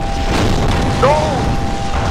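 Explosion-heavy soundtrack of an animated battle: deep rumbling booms under a steady held tone, with a short pitched sound that rises and falls about a second in.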